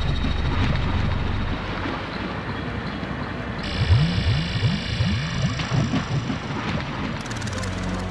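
Electronic ambient dub music from analogue synthesizers: a low droning bass bed under a hissy, engine-like texture. A layer of high steady tones enters about three and a half seconds in, followed by a quick run of short rising swoops low down.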